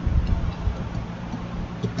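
Computer keyboard keys clicking as code is typed: a few irregular keystrokes over a steady low hum.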